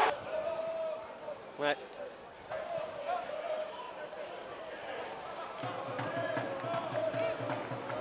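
Live pitch-side sound of a football match with few spectators: the thud of the ball being kicked and players' distant calls across the pitch.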